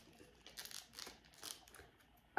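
Faint rustling and crinkling of wax-melt sample packaging being handled, in a few short bursts.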